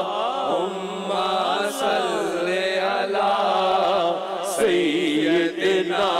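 A male voice singing a naat unaccompanied, in long ornamented phrases that wave up and down in pitch, over a steady low held note.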